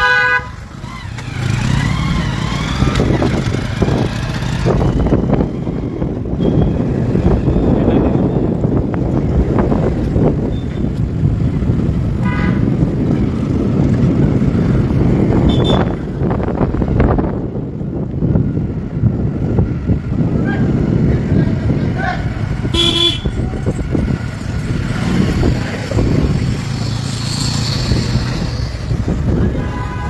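Motor scooter riding along a town street, its engine and road noise steady throughout, with short vehicle-horn toots about 12, 16 and 23 seconds in.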